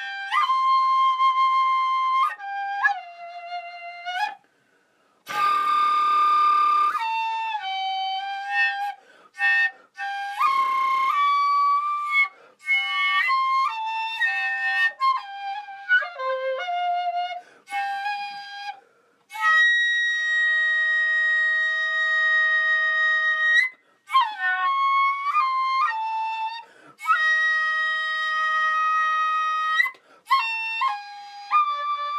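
Solo recorder playing a slow, single melodic line: separate notes of varying length with brief breaks, a breathy, noisy note about five seconds in, and two long held notes in the second half.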